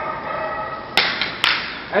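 Two sharp hits about half a second apart, about a second in.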